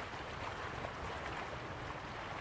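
Running water of a stream flowing steadily, an even rush without breaks.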